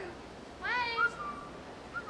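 A high-pitched voice cry about half a second in, rising and then held, followed by a thin steady tone. A second short tone comes near the end.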